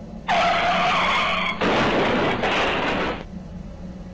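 Car tyres screeching for about a second, cut off sharply by a loud, harsh crash noise that lasts about a second and a half: a car accident sound effect.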